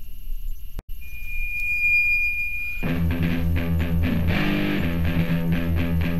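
Hardcore punk recording: after a short gap, a single high steady whine holds for about two seconds. Then the band comes in with distorted electric guitar and bass, about three seconds in.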